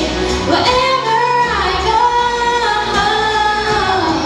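A woman singing a pop song into a microphone over an instrumental backing, holding long notes that slide between pitches.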